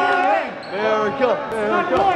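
Voices chanting in a sing-song way: long held calls that rise and fall, a few to the second.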